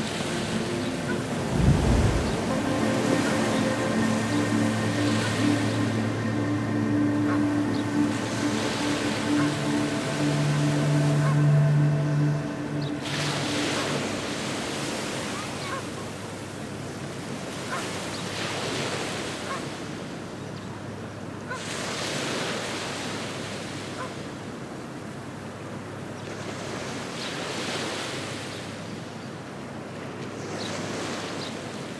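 Ocean surf washing onto a beach, swelling and fading every few seconds. Held low musical notes play under it for about the first half, then stop.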